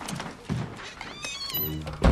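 A wooden interior door being opened, its hinge creaking in a short, wavering high squeal a little past halfway, over soft steps and creaks on a wooden floor; a heavy thump comes at the very end.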